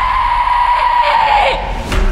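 A high scream held on one pitch that breaks off about a second and a half in, followed near the end by a single sharp hit.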